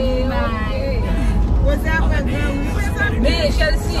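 Women's voices talking inside a moving car's cabin, over the steady low rumble of the car on the road.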